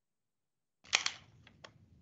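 Silence, then about a second in a quick cluster of sharp clicks from someone working a computer, followed by two fainter single clicks, picked up by a video-call microphone.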